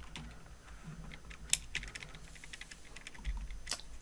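Keystrokes on a computer keyboard: scattered key clicks, a quick run of several in the middle and a sharper single click near the end.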